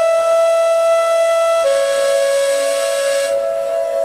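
Indian flute playing a long, breathy held note, which steps down to a lower held note about one and a half seconds in.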